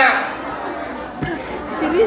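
Audience chatter: several voices talking at once, echoing in a large hall, with one short thump a little past halfway.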